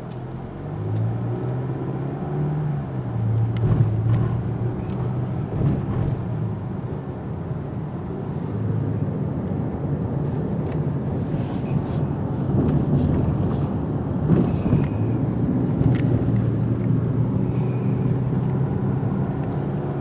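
Car engine and road noise heard from inside the cabin while driving, the engine note rising and falling as the car speeds up and slows, with a few short knocks.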